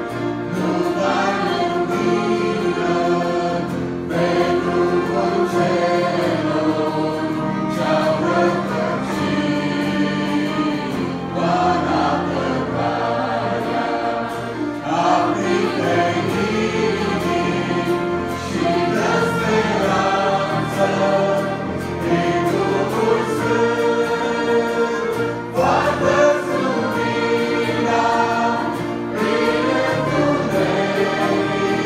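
A large mixed choir singing a gospel hymn in phrases of a few seconds, with a lead singer on microphone, over a band with acoustic guitar, brass and keyboards and a steady bass line.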